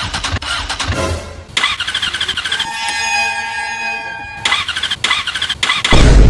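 Motorcycle electric starter cranking the engine in bursts without it catching: the engine won't start. In the middle there is a steady, high squealing whine for about two seconds.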